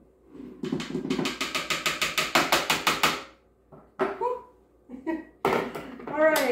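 Icing sugar being tipped and shaken out of a plastic bowl into a stand mixer's steel bowl: a quick run of rhythmic taps and scrapes lasting about three seconds, getting faster toward the end. About five and a half seconds in comes a single knock as a bowl is set down on the counter.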